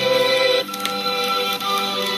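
Music with sustained chords that shift a little over half a second in.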